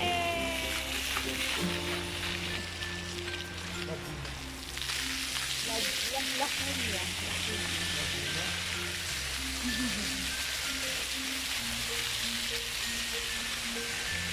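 Background music with a steady bass line, over the hiss of fountain jets spraying water. The water hiss grows louder about five seconds in.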